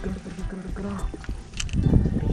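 Wind rumbling on the camera microphone, with a faint voice in the background.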